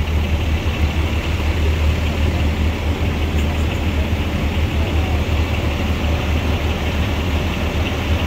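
Idling fire engines: a steady low engine rumble with no sudden events.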